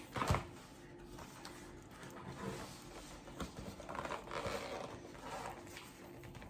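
Faint, intermittent rustling and scraping as hands struggle with the very tight plastic-and-cardboard packaging of a boxed diamond painting kit.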